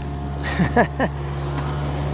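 Excavator's diesel engine running steadily nearby, with a few short downward-sliding sounds about half a second to a second in.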